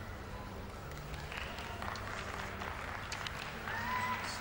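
Arena crowd applauding a finished figure skating programme, the clapping swelling from about a second in. A brief rising pitched tone sounds near the end.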